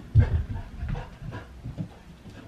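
A puppy running across the room, its paws making a quick run of soft thumps on the floor that is loudest just after the start and thins out toward the end.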